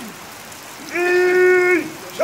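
Steady rain falling on wet ground. About a second in, a loud held pitched tone sounds for nearly a second and dips slightly in pitch as it stops.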